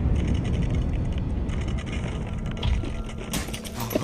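Earthquake sound effect: a deep rumbling with rattling and cracking that slowly eases off, with a flurry of sharp rattles and clicks near the end.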